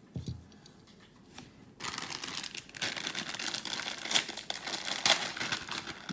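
A soft thump just after the start, then, from about two seconds in, plastic packaging crinkling steadily as it is handled.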